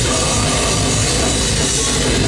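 Live grindcore band playing loud and dense: distorted electric guitars and fast drums with no letup, heard from within the audience.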